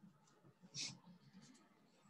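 Near silence in a small room, with one brief soft hiss a little under a second in.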